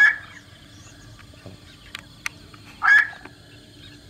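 Black-crowned night heron calls: two short calls about three seconds apart.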